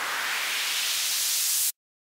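Upward white-noise filter sweep from the Sytrus synthesizer in FL Studio: a hiss whose filter cutoff opens from low to high, so it brightens and swells steadily. It cuts off suddenly near the end.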